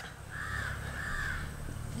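A crow cawing in the background: two drawn-out calls back to back, over a faint steady low hum.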